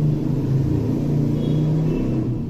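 A steady low rumble with a hum at its core.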